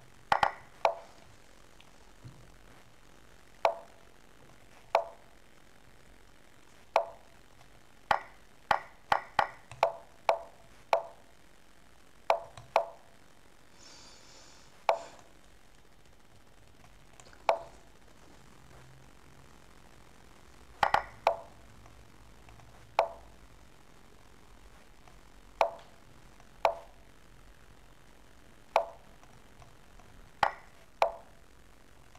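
Lichess move sounds from the computer during a fast bullet chess game: short wooden clicks, one per move, coming at irregular intervals, sometimes several in quick succession and sometimes a few seconds apart.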